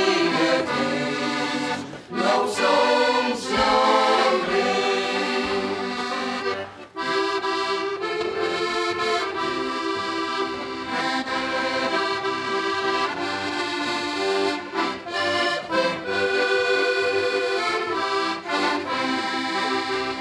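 Two button accordions, one of them a Fantini, playing a traditional folk tune together, with brief breaks between phrases about two and seven seconds in.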